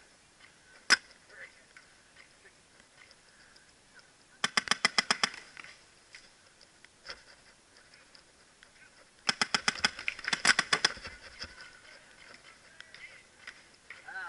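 Paintball marker firing: a single shot about a second in, a rapid burst of about eight shots at roughly ten a second near the middle, and a longer string of rapid shots around ten seconds in.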